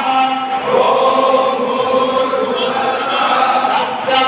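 A large group chanting a mantra together in unison, holding long notes.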